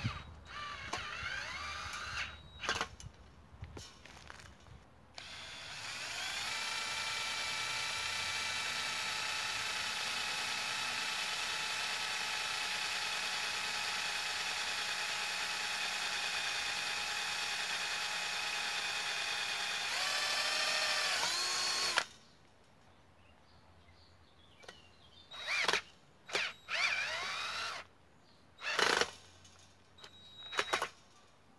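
Cordless drill/driver working on a fence post: a few short trigger bursts, then one long steady run of about sixteen seconds, boring into the post, which wavers and stops. Several more short bursts follow near the end as a screw is driven in to hold the wire mesh.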